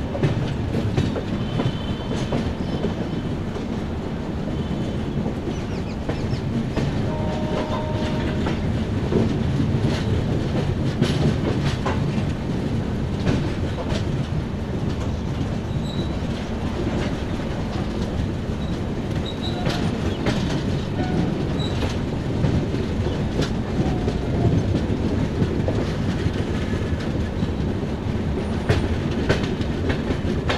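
Passenger express coaches running at speed: a steady rumble of wheels on rail with repeated clickety-clack over the rail joints, heard close up from the side of the moving coach.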